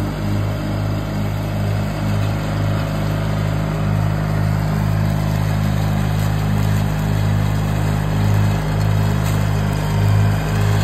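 John Deere 316 garden tractor's engine running at a steady speed with the mower deck engaged, cutting tall grass.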